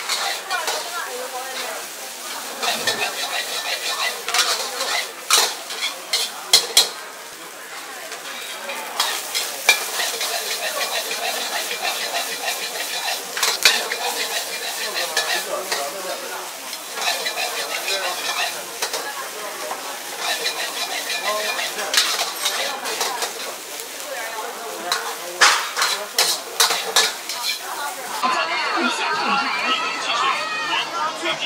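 Egg fried rice sizzling in a wok as a metal ladle stirs and scrapes it, with sharp clanks of the ladle against the wok at irregular moments. In the last couple of seconds this gives way to crowd chatter.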